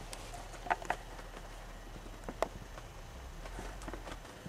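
Quiet room tone inside a small space, broken by a few light clicks and knocks: two close together just under a second in and another about two and a half seconds in.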